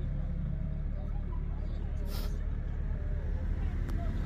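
A steady low hum, with faint voices in the background and a short hiss about two seconds in.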